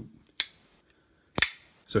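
Two sharp metallic clicks about a second apart, the second the louder: the blade of a Zero Tolerance 0055 bearing-pivot flipper knife being worked, snapping shut and then flipped open to lock up.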